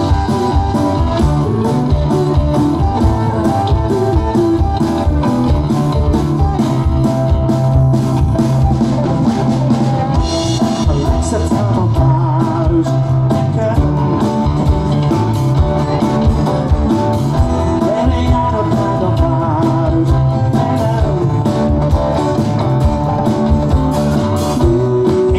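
Live rock band playing: a strummed round-backed acoustic-electric guitar over a drum kit keeping a steady beat.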